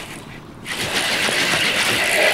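Fly reel's drag buzzing in a fast continuous rasp as a hooked northern pike runs and strips line, starting just under a second in.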